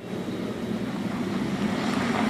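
Steady outdoor rushing noise with a low drone underneath. It swells in over the first fraction of a second and then holds even.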